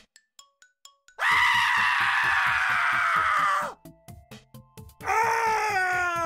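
A person screaming: one long, shrill scream begins about a second in and holds for about two and a half seconds, and a second, wailing cry that falls in pitch begins near the end.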